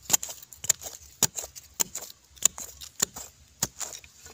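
A hand digging tool chopping into dry, stony soil to dig out a wild yam tuber. It lands seven sharp strikes, a little more than one every half second.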